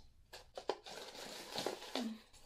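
A hand rummaging in a plastic storage container: a couple of light clicks, then steady crinkling and rustling from about a second in.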